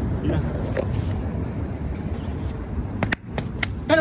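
A spare steel wheel and tyre rolled by hand over concrete pavement, a steady low rumble, followed by a few sharp knocks near the end as it is handled.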